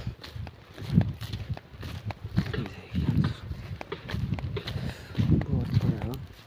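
A person's voice talking in short bursts, with footsteps on dry field soil as the phone is carried along.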